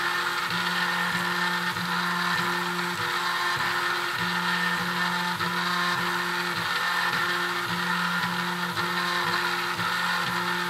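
3D printer's stepper motors whining as the print head moves through a layer: a set of steady tones that break off and change pitch every half second or so as each move starts and stops.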